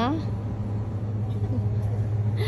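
Steady low hum running without change, with the tail of a spoken word at the very start.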